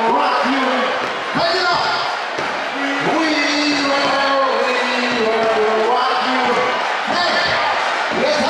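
An amplified voice over a PA, calling out in long drawn-out shouts, with a crowd's noise beneath.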